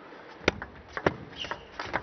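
Table tennis rally: the plastic ball clicks sharply off the rubber-faced bats and the table, several knocks roughly half a second apart.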